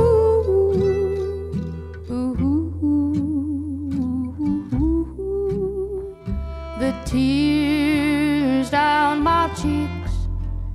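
Live acoustic string band playing a slow tune on acoustic guitar, upright bass and fiddle. Steady low bass notes sit under plucked chords, and a wavering, vibrato-rich melody line comes up loud in the last few seconds.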